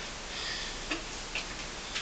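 Simply Fit plastic twist board clicking as it rocks and twists under a person working out: three short sharp clicks at uneven spacing, in the second half.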